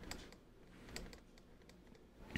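Faint, scattered clicks and taps of a stylus on a pen tablet while handwriting, over near-silent room tone.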